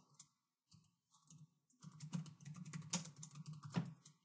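Typing on a computer keyboard: a few scattered keystrokes, then a quick run of keystrokes starting about halfway through and stopping just before the end.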